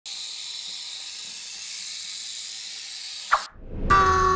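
Western diamondback rattlesnake rattling its tail: a steady, high, dry buzz, the species' defensive warning. It stops suddenly about three and a half seconds in, just after a brief falling sweep.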